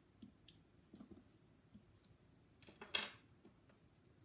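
Quiet handling sounds of a small photopolymer stamp on a clear acrylic block being inked and pressed onto card stock, with a few faint soft ticks. A single louder brief clack comes near the end.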